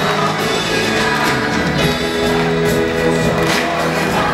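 Live Christian worship band playing an instrumental passage, with violins and electric guitar, amplified in a large hall.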